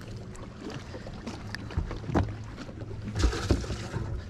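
A few knocks and handling noises on a boat deck over a steady low hum.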